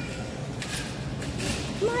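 Steady low background rumble with two brief hissy rustles about a second apart, then a woman's voice near the end.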